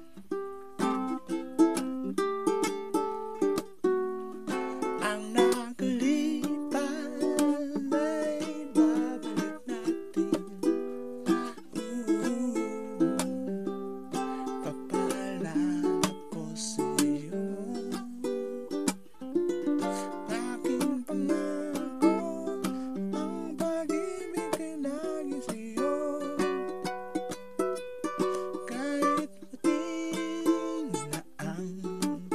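Homemade ukulele strummed in steady chords, with a voice singing along at times.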